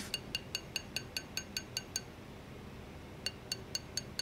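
A planishing hammer tapping a metal ring shank on a steel ring mandrel: quick, light, evenly spaced strikes, about five a second, each with a bright metallic ring. They pause about two seconds in and resume just after three seconds. The hammering is thinning the shank, which is still too thick.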